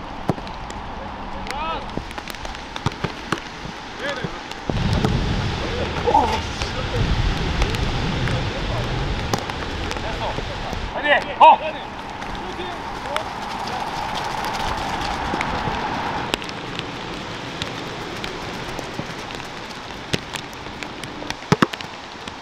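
Outdoor football training: scattered shouts and calls from players, occasional sharp thuds of balls being kicked, and a steady hiss. A low rumble runs from about five to ten seconds in.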